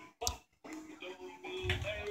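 An oldies song playing on an AM radio station's broadcast. The sound cuts out briefly near the start, with a single click, and then the song carries on.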